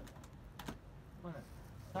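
A few light clicks and taps, with a faint voice speaking briefly past the middle.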